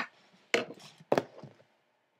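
A long knife slicing through a crusty loaf of Italian bread and knocking twice on a wooden cutting board as it finishes each cut, with a brief scratch of crust after each knock.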